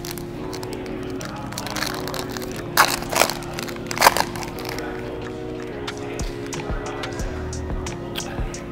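Background music with steady held notes that change every second or so, over which a foil trading-card pack wrapper crinkles in a few sharp bursts around three to four seconds in.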